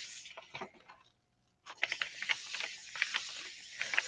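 Hands rubbing and pressing a sheet of paper down onto a gel printing plate, a faint papery rustling with small crackles. It pauses for about a second near the start, then resumes.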